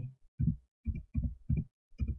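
Typing on a computer keyboard: about four short, dull keystrokes at an uneven pace, entering a date.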